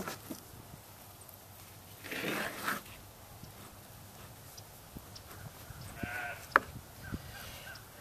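A sheep bleating twice in the background, once about two seconds in and again around six seconds in, with a single sharp knife click on the plastic cutting board just after the second bleat.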